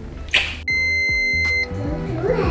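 A steady, high-pitched electronic beep that starts sharply and holds level for about a second, over background music.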